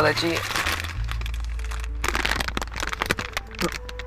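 Foil crisp bag crinkling and crackling in irregular bursts as it is opened and handled, over a low steady hum that starts about a second in.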